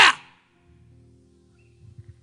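A shouted word trails off into the hall's echo. After it, faint background music holds a low sustained chord.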